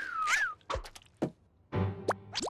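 Cartoon sound effects: a short warbling squeal from a cockroach, then a few quick falling zips and thuds as the cockroaches dash away.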